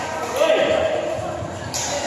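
Badminton rackets hitting a shuttlecock in a large, echoing sports hall: a couple of sharp hits about a second and a half apart, over the chatter and calls of players and spectators.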